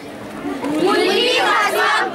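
A group of young voices shouting together in unison, swelling up about half a second in.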